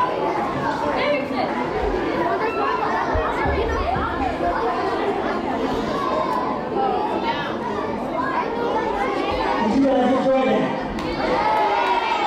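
Many children's voices talking and calling out at once in a large hall, a steady crowd babble that rises a little near the end.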